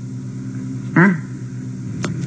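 A steady low hum runs under the recording, with a man's brief questioning "Huh?" about a second in.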